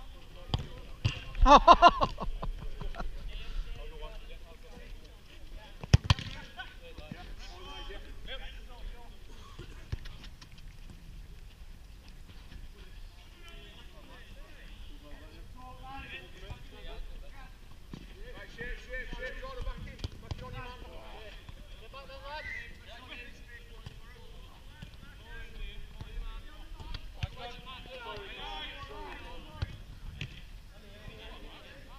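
Five-a-side footballers calling and shouting across the pitch, with one loud shout about a second and a half in and a single sharp thud of the ball being struck about six seconds in; fainter calls between players run on through the rest.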